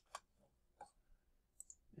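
Near silence with about four faint, short clicks from a computer mouse and keyboard as a link is copied and pasted.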